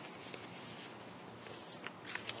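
Faint rustling of paper sheets being handled and turned over close to a microphone, with a couple of short crinkles, one near the end.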